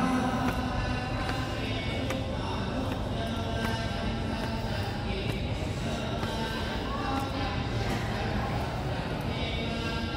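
Music with chanting voices, in the manner of Buddhist sutra recitation, with a few light knocks scattered through it.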